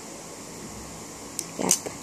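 Steady low background noise in a room, with no distinct event, then one short spoken "yep" near the end.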